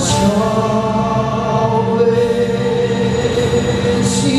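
A male singer's amplified live vocal over backing music, holding long sustained notes.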